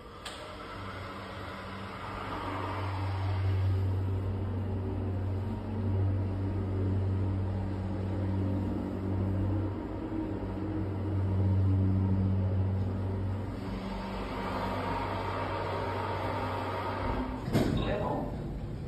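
Otis hydraulic elevator's power unit humming steadily as the car travels, heard from inside the car. Near the end the hum stops and there is a sharp knock as the car arrives and the doors begin to open.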